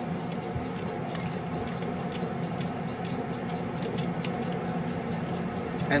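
Tool-room lathe running slowly with a clamp knurler clamped onto the spinning workpiece, rolling a diamond knurl: a steady motor hum with faint light ticking from the knurling wheels.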